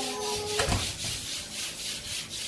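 Stiff brush scrubbing moss off cement, in even strokes about three a second.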